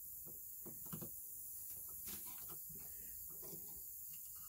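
Faint, scattered clicks and taps of a screwdriver and hands working at the battery compartment of a large plastic skull prop.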